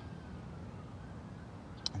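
Faint distant siren, one long, slowly wavering tone over a low, steady outdoor rumble, with a short click near the end.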